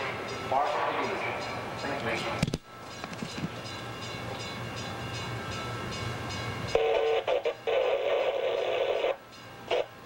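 Steady low mechanical hum of the bascule bridge's drive machinery, heard from inside the operator's house while the leaf is being lowered. About two-thirds in, the sound changes abruptly to a louder, choppy mid-pitched sound.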